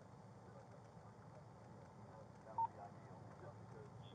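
A quiet, steady low hum inside a patrol car, with one short electronic beep about two and a half seconds in.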